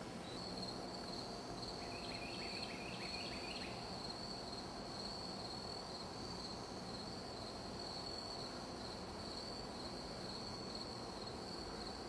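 Insects trilling in summer woodland: one steady, high, continuous trill, with a short run of lower chirps from about two seconds in, lasting about a second and a half.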